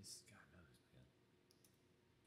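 Near silence, with a few faint clicks in the second half.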